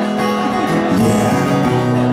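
Acoustic-electric guitar strummed live, with chords ringing on between strokes, in an instrumental passage with no singing.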